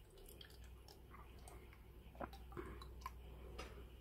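Faint trickle of tap water poured from a plastic measuring jug into the narrow neck of a small plastic culture flask, with a few light ticks along the way.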